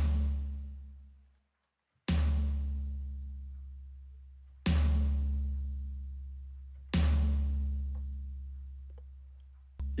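Sampled tom in FL Studio's FPC, played five times, each hit followed by a deep low sub tail. The first tail dies out after about a second and a half. The later hits ring on for two to three seconds, fading slowly until the next hit: the long release and decay time that makes the tom's tail clash with the bass and kick.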